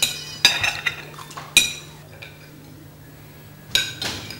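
Cutlery clinking against plates as people eat: four sharp clinks with a short ring, spaced unevenly, over a low steady hum.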